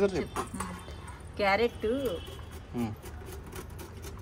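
Brief speech, with faint scraping as a carrot is rubbed against a stainless steel grater in the pauses.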